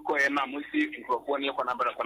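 Speech: a person talking, the voice thin and cut off at the top as in radio or phone audio.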